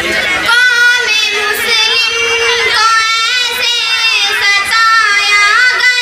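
A girl singing solo into a microphone, a melodic song in long held notes that slide from one pitch to the next.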